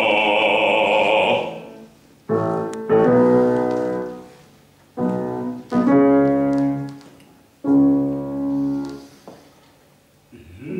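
A man sings a held note with vibrato that ends about a second and a half in. Then a grand piano plays five chords, in two pairs and a last single one, each left to ring and fade.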